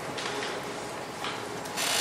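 Dry-erase marker writing on a whiteboard, in a few short strokes.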